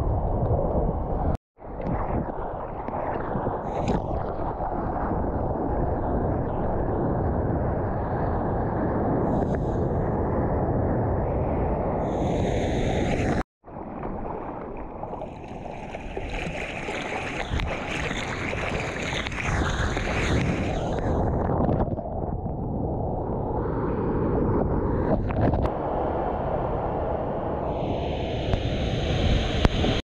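Ocean water rushing and sloshing close against the microphone, a heavy low rumble of moving seawater with several swells of brighter splashing hiss. The sound drops out suddenly twice for a fraction of a second, once near the start and once about halfway.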